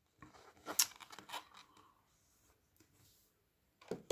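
Handling of a small cardboard watch box and its cushion as the watch is lifted out: a few short, faint scrapes and rustles in the first second and a half.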